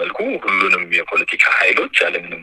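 Speech only: a narrator's voice speaking continuously in Amharic.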